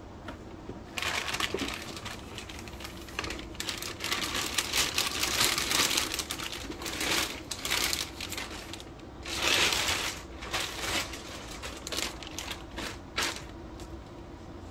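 Clear plastic bag crinkling and rustling in irregular bursts as it is pulled off a shotgun, loudest around the middle and again about two-thirds of the way through.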